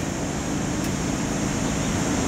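Steady background noise, a low rumble with a high hiss and no clear events.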